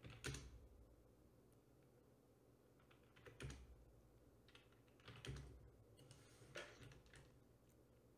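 Faint computer keyboard keystrokes in four short clusters a second or two apart, over quiet room tone.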